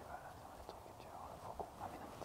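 Faint whispering, a person's hushed voice without clear words.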